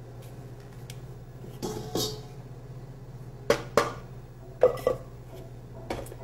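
Knocks and clinks of a food processor bowl and blade against a stainless steel mixing bowl as crumbly dough is tipped out. They come in pairs about a second apart, over a steady low hum.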